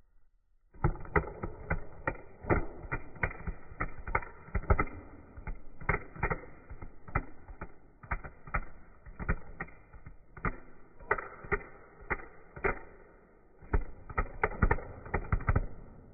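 Playing cards in a riffle shuffle, slowed down: the cards drop off the thumbs and interleave as a drawn-out, irregular run of separate clicks, a few a second, starting about a second in.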